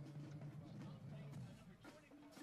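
Faint outdoor field ambience with distant voices over a steady low hum, and a brief knock near the end.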